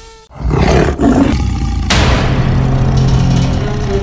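Big-cat roar sound effect, starting just after a brief drop-out, with a second, stronger surge about halfway through.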